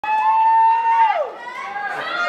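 A person's high-pitched whoop, held steady for about a second and then sliding down in pitch, followed by quieter voices from the audience.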